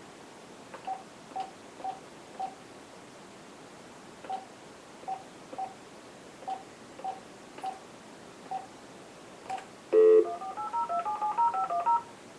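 Phone keypad beeps, about a dozen short single beeps at one pitch and unevenly spaced, as a number is keyed in. About ten seconds in comes a short louder tone, then a fast run of touch-tone (DTMF) dialing tones as the call is placed.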